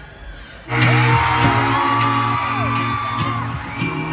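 Live rock band kicking in suddenly just under a second in, with a steady low bass note under a long high held note that slides up at the start and falls away near the end.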